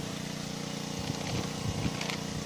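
An engine running steadily at one pitch, with a few faint rustles in the second half.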